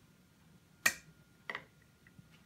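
Two sharp metallic clicks from a metal anchovy tin being opened by hand, the lid or pull-tab snapping as it is worked. The first click, a little under a second in, is the louder; a weaker one follows about two-thirds of a second later.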